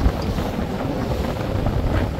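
Steady wind buffeting the microphone on a moving tour boat, mixed with the low rumble of the boat running through the water.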